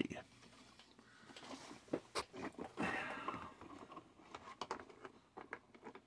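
Cardboard advent-calendar door being pushed in and a small built LEGO model worked out of its compartment: faint rustling and scraping of cardboard with a few light clicks, the sharpest about two seconds in.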